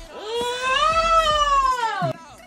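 A long, high, drawn-out vocal exclamation from a person: one sustained call that rises and then falls in pitch, breaking off sharply near the end.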